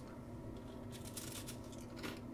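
Faint crunching of a crisp, flaky unagi pie pastry being bitten and chewed, with a quick run of crunches about a second in.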